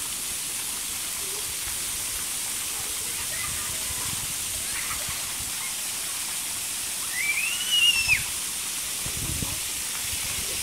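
Steady hiss of water spraying from splash-pad fountain jets. A brief high-pitched cry rises and falls about seven seconds in.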